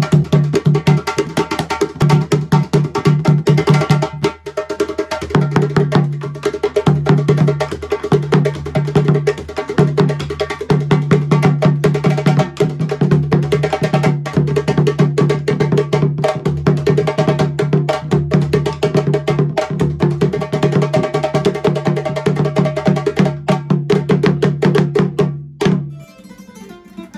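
Djembe drumming: hand drums struck in a fast, dense rhythm over a steady low note, with a short break about four seconds in, cutting off suddenly near the end.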